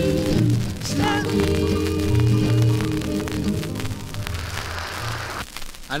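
Closing bars of a live calypso band number: held chords over bass notes that end about five and a half seconds in. Steady crackle from the vinyl record's surface runs underneath.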